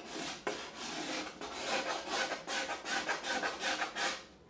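Hand-held steel scraper drawn over the carved arch of an archtop guitar back in quick, repeated short strokes, each a dry rasp as it shaves wood off, the fine thinning work on the plate.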